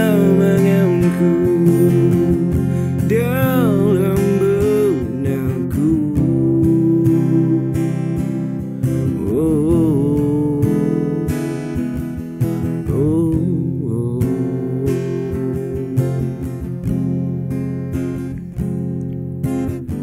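Acoustic guitar playing the chords of a slow Indonesian pop ballad, strummed and picked, with wordless wavering vocal runs coming in and out over it.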